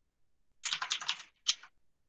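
Computer keyboard typing: a quick run of keystrokes lasting well under a second, then a short second burst of keystrokes.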